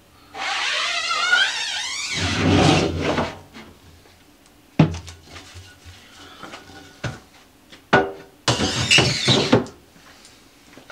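Emulsion scoop coater drawn up a screen-printing screen's mesh, a squealing scrape of about two seconds, followed by a rougher scrape. Later come sharp knocks of the screen frame being handled and, near the end, a second scraping slide as the screen goes into the wooden drying rack.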